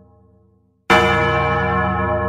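A large bell tolling: the previous stroke dies away to silence, then one loud strike just under a second in rings out with a long, slowly fading decay.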